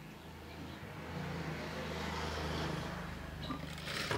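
Sewing machine running steadily and stitching through gathered fabric layers, getting louder about a second in. A sharp knock comes near the end.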